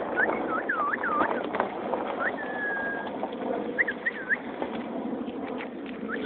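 Birds chirping: a series of short dipping chirps, with one longer level whistle a little over two seconds in, over a steady outdoor background noise.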